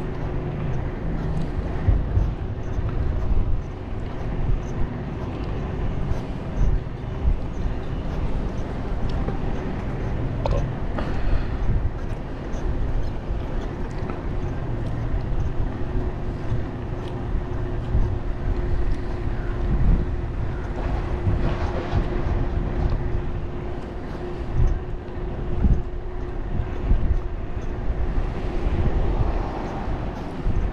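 Wind buffeting the microphone of a camera on a moving bicycle, with road and traffic noise and a faint steady hum beneath.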